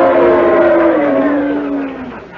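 Live audience booing together, many voices held in one long drawn-out boo that fades out near the end.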